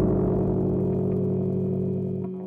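A rock band's final chord, from distorted electric guitar and bass, held and slowly fading as the song ends.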